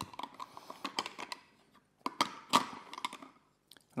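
Small plastic puzzle pieces clicking and tapping against a toy truck's clear plastic bed as they are fitted in by hand: a run of light, irregular clicks with a louder cluster a little after halfway.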